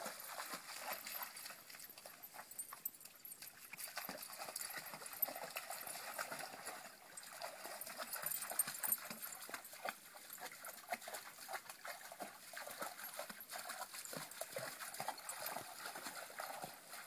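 A dog wading through a shallow creek, its legs splashing and sloshing the water in uneven strokes, over the steady trickle of the stream.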